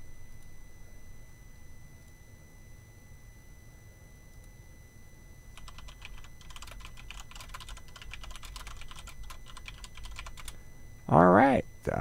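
Computer keyboard typing: a quick, irregular run of keystrokes lasting about five seconds, starting about halfway through.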